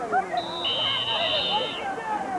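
Referees' whistles blown to end the play after a tackle: two steady shrill tones, the second joining a moment after the first, both stopping a little before the end, over spectators' chatter.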